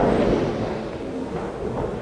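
A steady, noisy rumble of race-car engines out on the circuit, fading slightly.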